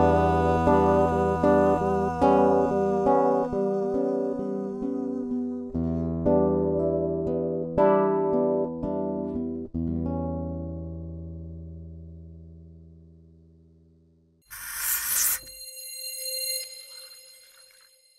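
Fingerpicked acoustic guitar plays the closing bars of a folk song, with single notes over a steady bass. It ends on a chord that rings out and fades. About fifteen seconds in, a TV channel ident comes in: a short bright whoosh, then ringing chime tones that die away.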